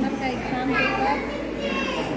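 Overlapping chatter of many children and adults in a crowded classroom, with a child's high voice standing out in the middle and again near the end.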